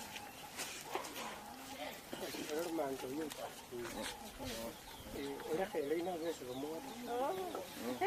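Indistinct voices speaking in the background, in two stretches about two and a half and five seconds in, over a faint hiss.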